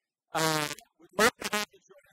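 A man's voice: a short, held vocal sound near the start, then two quick voiced bursts about a second in.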